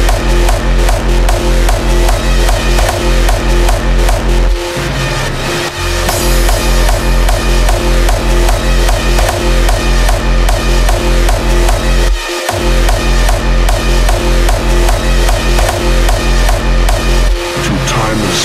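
Hardstyle dance track: a heavy distorted kick drum on every beat, about two and a half a second, under a sustained synth line. The kick drops out briefly about four and a half seconds in and again about twelve seconds in.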